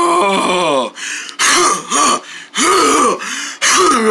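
A person's voice making wordless vocal sounds: one drawn-out sound sliding down in pitch over about the first second, then four short rising-and-falling syllables.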